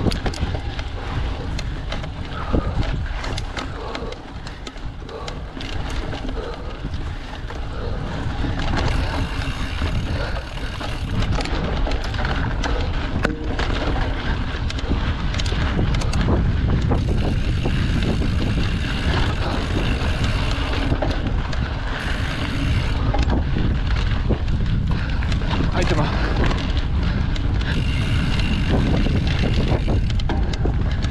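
Mountain bike rolling fast over a dirt forest trail: wind buffeting the microphone, with the tyres on dirt and the bike rattling over bumps in many short knocks. It grows louder in the second half.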